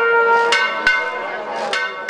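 Brass band music with held notes and two drum strikes, growing quieter toward the end.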